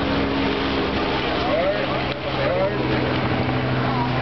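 A steady low mechanical hum, like a running motor, with voices over it.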